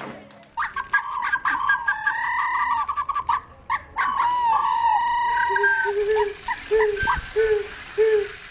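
A rooster crowing: two long, drawn-out calls, then a run of short clucking calls, about two or three a second, in the last few seconds.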